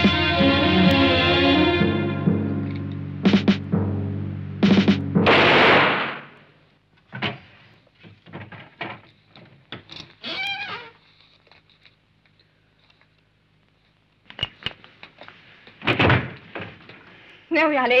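Dramatic film score with guitar that ends in a loud, harsh burst of noise about five and a half seconds in. Scattered knocks and clicks follow, with a heavier thud about two seconds before the end.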